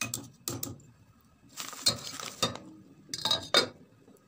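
A metal spoon stirring shredded cabbage in a pot of broth, clinking against the pot several times with a scraping stretch in the middle, then a few more clinks near the end as the lid is set on the pot.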